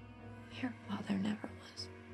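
Soft background music with a woman's whispered, tearful voice for about a second, starting about half a second in.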